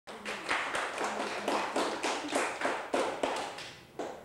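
A small audience clapping, the applause dying away over the last second.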